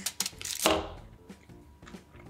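A mouthful of crunchy food being bitten and chewed: a ramen, rice and tuna roll topped with crushed stale hot Cheetos. A few crisp clicks come at the start, then one louder crunch a little over half a second in, over faint background music.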